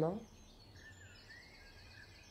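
Near silence outdoors after a spoken word trails off, with faint, distant bird chirping.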